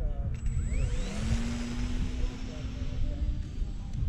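Motor and propeller of a radio-controlled model airplane spinning up for a hand launch: a whine rises steeply about half a second in, then holds high and steady as the plane flies off. A steady low rumble runs underneath.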